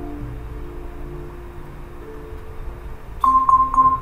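Soft background music, then near the end three quick, loud beeps of an Avast antivirus alert as it blocks a threat.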